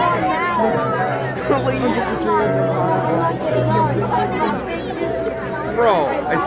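Music played for a Christmas light display, with held bass notes, under the chatter of a large crowd of people talking.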